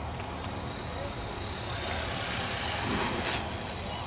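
RC helicopter descending in autorotation with its motor cut: the main rotor blades swish, growing louder as it comes down, with a high whine falling in pitch as head speed bleeds off. A short burst about three seconds in comes as it flares and sets down, with wind rumbling on the microphone underneath.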